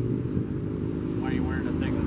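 A steady low mechanical hum runs under the scene, with faint speech about halfway through.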